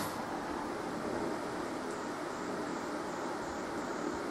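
Steady hiss with a faint hum from a home-built valve guitar amplifier and its speaker, switched on with its parts not yet grounded, so touching them makes it pick up noise.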